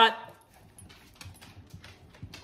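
The last of a man's voice, then faint scattered clicks and small taps from dogs shifting about close by.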